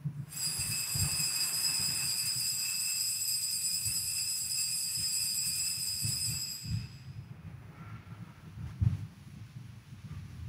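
Altar bells ringing steadily at the elevation of the consecrated host, a bright high jingle that fades out about seven seconds in. A couple of soft knocks follow near the end.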